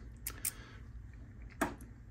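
A few faint, light clicks from a freshly cut Medeco key and a cam lock being handled, with one sharper click about one and a half seconds in, over a faint low hum.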